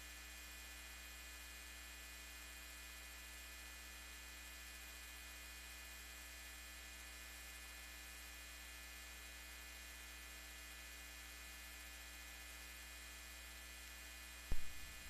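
Faint, steady electrical mains hum with a little hiss on the sound system's audio feed, unchanging throughout; nothing else is heard.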